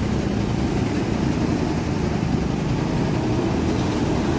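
Hino 500 Euro 4 tanker truck's diesel engine running steadily as the truck crawls through deep mud, a low, even engine drone.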